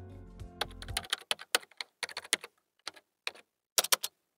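Computer keyboard typing: irregular key clicks, single taps and quick runs, as a search query is typed. A music bed fades out about a second in.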